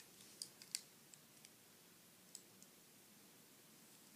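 Near silence with a few faint, light clicks, mostly in the first half.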